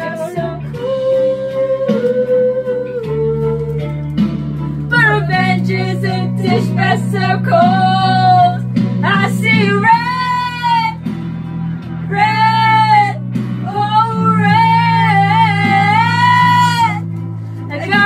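Women singing karaoke loudly into a microphone over a rock backing track with bass and guitar. Long held notes with a wavering vibrato start about five seconds in.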